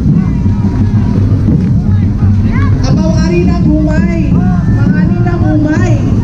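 Loud festival street-dance music with heavy, rough low percussion. From about halfway in, voices call out or chant over it.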